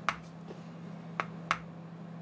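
A small subwoofer driven directly by an LM555 timer circuit gives sharp clicks: one at the start, then a pair about a third of a second apart, like a heartbeat, over a steady low hum. The uneven heartbeat pulsing comes from the bench power supply switching between constant current and constant voltage.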